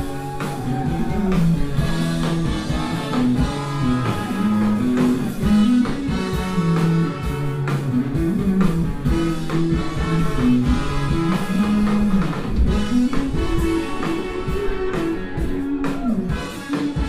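Live ska-punk band playing: a horn section of trumpet, trombone and saxophone carrying held notes over electric guitar, bass and drum kit.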